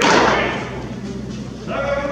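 A pitched baseball smacks into a catcher's mitt with a sharp pop that echoes briefly around the enclosed bullpen. Voices call out near the end.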